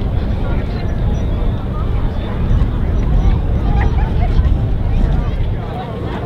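Indistinct crowd chatter, with voices in the background, over a steady low rumble.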